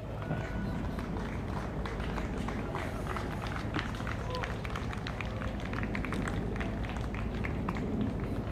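Footsteps on a gravel path, a quick run of short crunches that thickens from about three seconds in, over a steady low outdoor rumble and faint distant voices.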